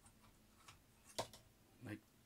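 A few faint clicks of hard plastic as a small gun accessory is fitted against a Hot Toys Bat-Pod model, with one sharper click a little past halfway.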